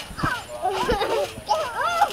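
Young children squealing and laughing in high cries that swoop up and down, with two dull thumps, about a quarter-second and about a second in, from bouncing on a trampoline mat.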